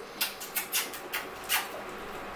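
A series of short, wet mouth smacks as a woman kisses a small dog's muzzle and the dog licks back.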